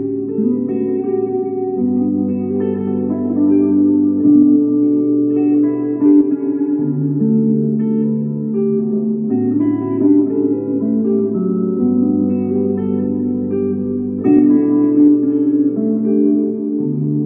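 Epiphone electric guitar played through a Marshall solid-state amp: looped, layered chords in 5/4 time, changing about every two and a half seconds, with an improvised melody played over them.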